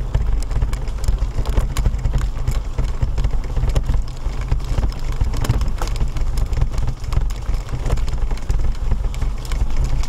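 Wheels rolling over a gravel path: a continuous, irregular crunching crackle over a steady low rumble.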